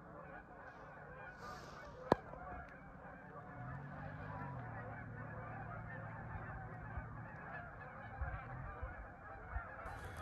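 Large flocks of geese flying overhead, many birds honking at once in a continuous overlapping chorus. A single sharp click sounds about two seconds in.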